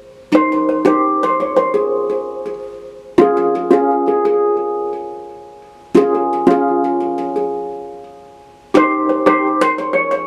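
NaturePan ten-note handpan in the F integral scale, its tone fields struck with the fingers. It plays phrases of ringing notes that sustain and fade, each opening with a strong accent, four phrases about three seconds apart.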